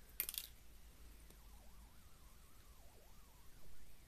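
A quick cluster of small clicks from glass seed beads in a small plastic dish as a needle picks them up, followed by faint handling sounds.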